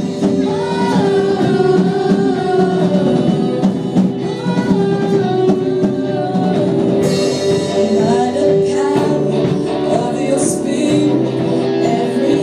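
Live worship band playing a praise song: female vocalists singing over drum kit, electric guitar and keyboard.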